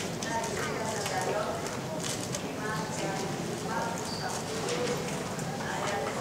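A woman preacher speaking into a pulpit microphone, with a sharp knock right at the start as her hand touches the microphone.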